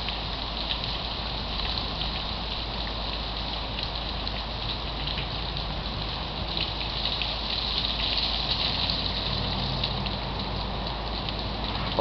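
Steady rain falling, a constant hiss with many small scattered drop ticks, swelling a little for a couple of seconds in the middle.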